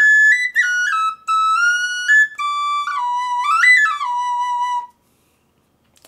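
Small five-hole pocket flute in a B pentatonic scale playing a short stepwise melody. It climbs to a high note, wanders down, makes a quick run up and back near the end, and finishes on a held low note that stops about five seconds in.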